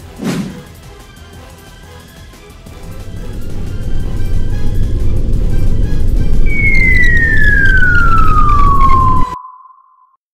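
Cartoon falling-whistle sound effect: one long whistle gliding steadily down in pitch, the cue for something dropping from a height. It plays over a loud low rumble that swells up a few seconds in, and both cut off suddenly near the end.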